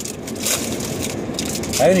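Foil wrapper of a Topps WWE trading-card pack crinkling and tearing as it is opened by hand, an irregular crackle; a laugh comes in near the end.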